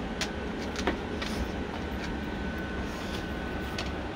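A steady low mechanical rumble with a few light clicks, and a faint steady high-pitched tone that comes in about halfway.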